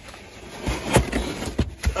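Cardboard pizza box lid being worked open by hand: cardboard scraping and rubbing, with a few low thumps and a sharp click about a second in.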